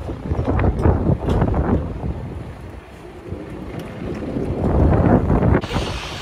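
Wind buffeting a phone microphone in loud, rumbling gusts: one spell of about a second and a half early on, a lull, then a second spell near the end.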